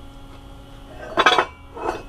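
Cast-iron VW brake drums clinking against each other as one is lifted off a stack: a ringing metallic clank just over a second in, then a lighter one near the end.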